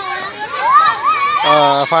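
Children's voices calling out and chattering, high and swooping in pitch. Near the end a lower, steady held voice or tone comes in.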